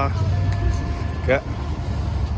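Low rumble of slow-moving cars and SUVs passing close by on the road, with two short shouted calls from people nearby, one at the start and one about a second and a half in.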